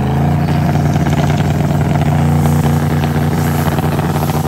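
Twin-turbo Camaro drag car's engine brought up onto the two-step launch limiter and held there, its pitch rising at the start and then staying steady, with a rapid crackle from the limiter. This is a boost check on the two-step, with the boost turned down to about seven pounds.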